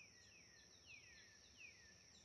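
Faint nature ambience: a steady high-pitched insect drone, with a bird repeating a short falling whistle several times.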